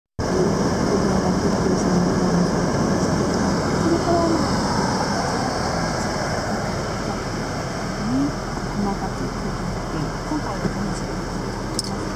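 Faint, indistinct voices over a steady, rushing background noise.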